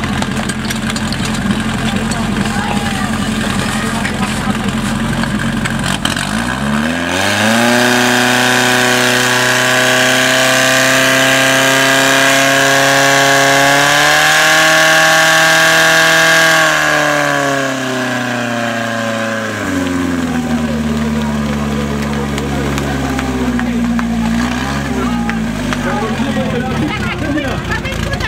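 Portable fire pump's engine running steadily, then revved up sharply about six seconds in. It holds at high revs for about ten seconds while driving water through the attack hoses to the nozzles, then is throttled back to a lower steady speed.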